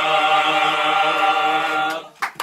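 Men's choir singing cante alentejano, unaccompanied, holding one long final chord that stops abruptly near the end.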